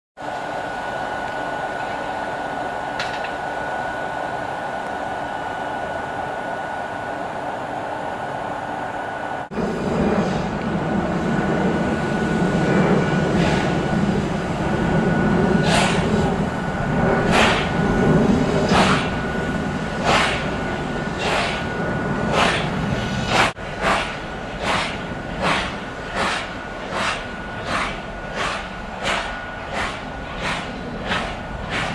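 A steam locomotive working a train away from a stand, its exhaust chuffs starting about a second apart and coming faster, to about two a second, as it gathers speed. Beneath them runs the steady hum and thin high whine of the FS E.656 electric locomotive leading it.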